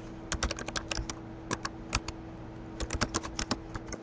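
Typing on a computer keyboard: runs of quick keystrokes with short pauses between them, over a faint steady hum.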